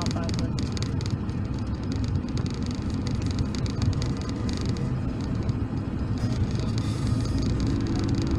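Steady engine and road noise of a moving car, heard from inside the cabin.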